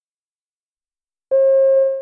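A single steady electronic beep: one mid-pitched tone with faint overtones, starting about a second in and cutting off under a second later. It is the signal tone separating items in a recorded listening exam.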